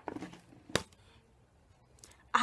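Handling noise: a few short clicks and light rustling as items are moved about, with one sharp tap just under a second in.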